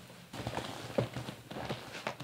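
A run of light taps and clicks, with one sharper knock about a second in, as things are handled at a kitchen cupboard.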